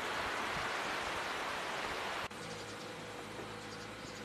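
Steady, even outdoor background hiss, cutting abruptly about two seconds in to a quieter background with a faint steady hum.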